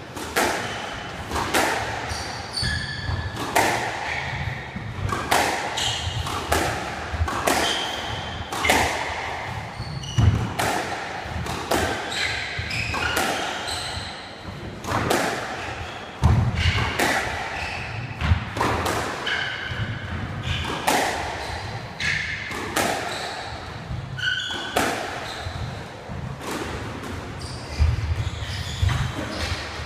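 Squash rally: the ball cracks off the rackets and thuds against the court walls about once a second, ringing in the hall. Short high squeaks of court shoes on the wooden floor come between the shots.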